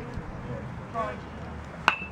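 Metal baseball bat hitting a pitched ball near the end: one sharp ping with a brief ringing tone after it.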